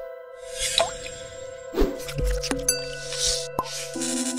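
Electronic logo-animation music: held synthesized tones with several whooshes and short sharp pops, a low tone entering about halfway through.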